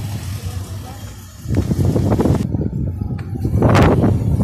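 Indistinct voices of people nearby over a low, uneven rumble, with a short rushing noise just before the end.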